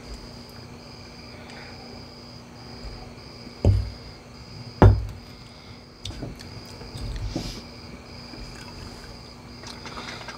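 Two dull thumps about a second apart near the middle, with a few softer knocks after them. Under them runs a steady high chirping that keeps breaking off at short, even intervals, together with a low steady hum.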